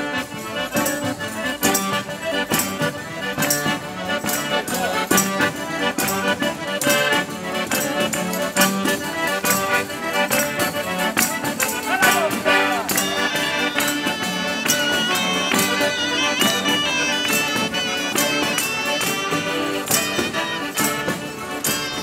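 Calabrian folk tarantella played live on two diatonic button accordions (organetti), with tambourines and hand claps marking a fast, steady beat. About halfway through, wavering voices rise over the music.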